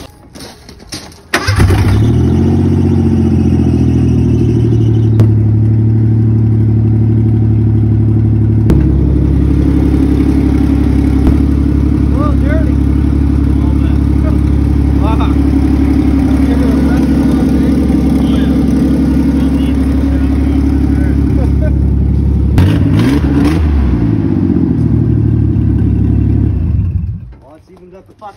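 Ford Bronco II's V6, with no exhaust fitted, starting about a second in and then running loud. Its note changes once early on, it revs up and back down briefly near the end, and it shuts off shortly before the end.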